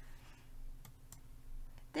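Computer mouse clicking, two faint clicks close together about a second in and a fainter one near the end, over a quiet room hum.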